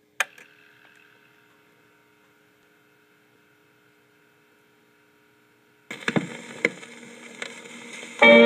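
Playback of a shellac 78 rpm record before the music: a sharp click with a brief ringing decay near the start over a faint steady hum, then about six seconds in the hiss and crackle of the record's surface noise sets in suddenly, with several loud pops as the stylus runs through the lead-in groove.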